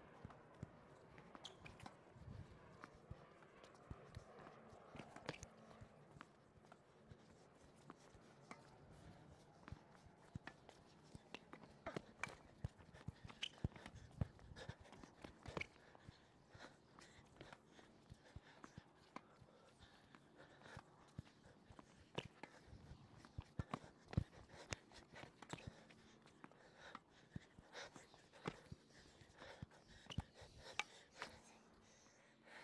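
Tennis balls struck softly with sliced strokes and bouncing on a hard court in an unhurried back-and-forth rally, heard as scattered, irregular knocks. Footsteps on the court come between the shots.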